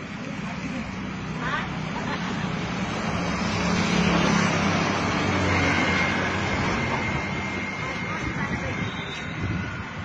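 Motor traffic: a vehicle's engine noise swells to its loudest about four seconds in and slowly fades, as a vehicle passes on the road. Voices are heard in the background.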